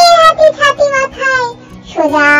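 A child's voice singing a Bengali nursery rhyme over a backing track: a long held note, then a few shorter sung notes, then a brief pause near the end.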